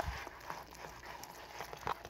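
Spoon stirring cooked macaroni and cheese in a plastic container: faint, irregular scrapes and clicks, with a sharper click near the end.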